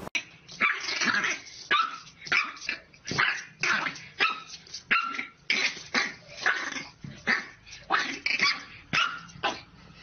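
A puppy barking at its own reflection in a mirror: a steady run of short, high yaps, two to three a second, with no let-up until near the end.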